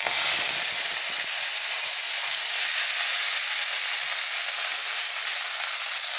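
Chopped fresh fenugreek leaves sizzling steadily in hot mustard oil in a kadhai, just after being added to the pan.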